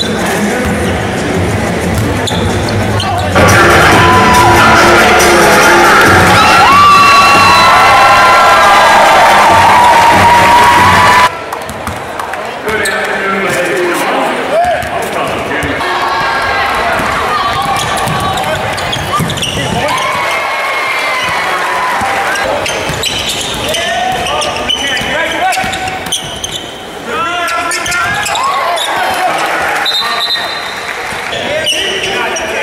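Basketball being dribbled on a hardwood gym floor, with short sneaker squeaks and background voices. A louder, busier stretch of sound runs from about three to eleven seconds in.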